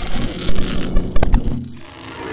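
Sound effects of a title animation: a high, steady ringing like an electric bell, broken off a little over a second in by a few sharp hits, then fading.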